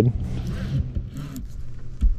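Wind buffeting the microphone in a steady low rumble, with a few faint short rustles; a laugh trails off at the start.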